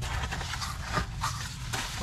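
Cardboard pizza box being opened and handled: rustling and scraping of the cardboard, with a few short knocks.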